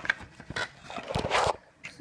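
Handling noise: a few short knocks and a burst of rustling about a second in as the packaging and phone are moved about.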